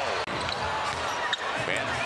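A basketball being dribbled on a hardwood court, with a sharp knock of the ball about a second and a half in, over the steady background noise of an arena crowd.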